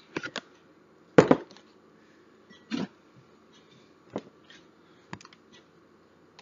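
Kitchen things being handled and set down: about five separate knocks and clunks with quiet between, the loudest about a second in.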